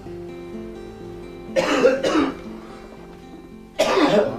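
A person coughing hard once about a second and a half in, and again just before the end, over music of held, plucked guitar-like notes.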